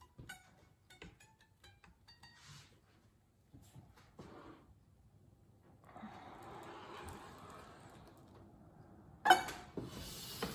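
A soap slab pushed through a wooden slab cutter: light clicks at first, then a few seconds of soft scraping as the soap slides along the cutter's metal tray, and one sharp knock near the end.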